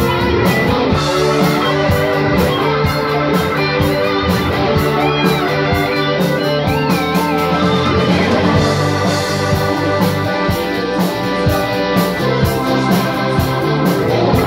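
Live rock music: a band with drums and electric guitar, plus keyboards, playing over a steady cymbal beat. About halfway through a lead line bends and wavers in pitch.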